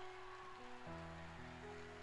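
Soft background music: sustained keyboard chords, changing chord about a second in.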